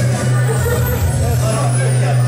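Loud music with deep, sustained bass notes, with voices over it.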